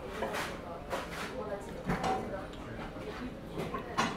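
Low room sound with faint voices in the background and a few light clinks of dishes and tableware.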